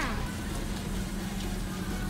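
Steady low hum under a hiss of background noise, with the tail of a child's voice at the very start.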